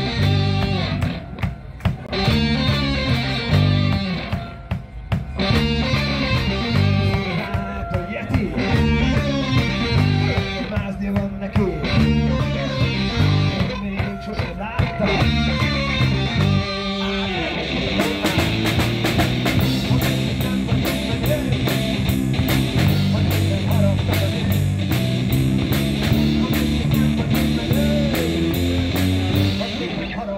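A live blues-rock trio of electric guitar, electric bass and drum kit playing an instrumental intro: a guitar riff over bass and drums, broken by several short stops in the first half. A little past halfway, the drums settle into a steady beat with constant cymbal hits, and the band plays straight on.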